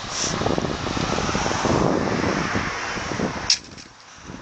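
Steady rushing road noise of skateboard wheels rolling fast on asphalt. It swells a little in the middle and cuts off with a sharp click near the end.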